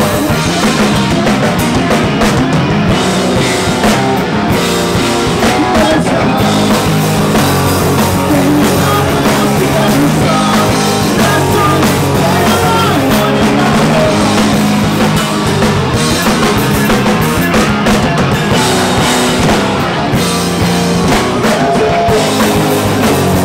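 Live rock band playing loud and without a break: electric guitars, bass guitar and drum kit.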